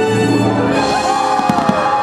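Fireworks show music playing, with gliding melodic lines, and a quick cluster of firework bangs about one and a half seconds in.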